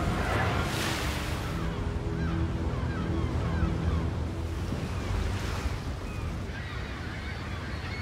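Ocean waves and spray washing around a crab boat at sea, a steady rushing noise, with held background music notes underneath.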